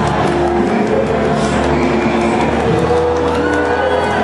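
Live church worship music from a band with a guitar, in long held notes that step up in pitch about three seconds in.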